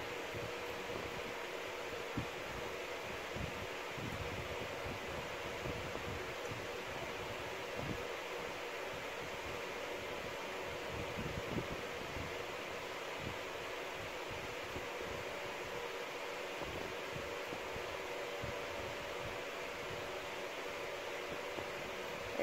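Steady whir of a room fan with a faint hum, and faint scattered rustles of hair being combed out.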